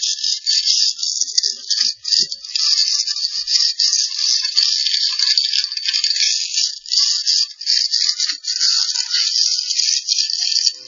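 Chimney inspection camera head scraping and rattling against loose soot and debris inside a flue, a continuous crackling, gritty noise that flickers in loudness as the camera is moved.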